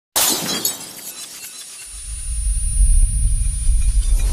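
Glass-shattering sound effect for an animated logo intro: a sudden crash of breaking glass right at the start that fades over about a second, followed by a deep low rumble that builds up and holds.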